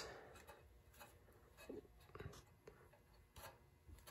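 Near silence with a few faint short rubs and taps as polyurethane suspension bushings are handled and fitted against a steel frame bracket.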